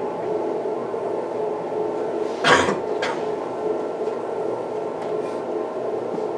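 Steady room hum, with a person coughing once sharply about two and a half seconds in and a smaller cough half a second later.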